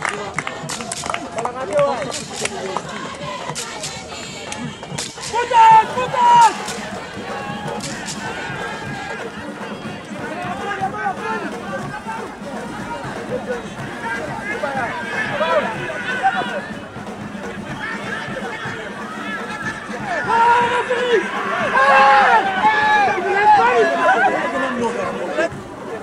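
People's voices talking and calling out around a football pitch in the open, louder from about twenty seconds in. Several sharp knocks come in the first eight seconds, with a brief loud burst about six seconds in.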